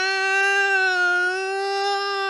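A person's voice holding one long 'Yyaaaah' yell at a nearly level pitch, acting out a comic-book scream.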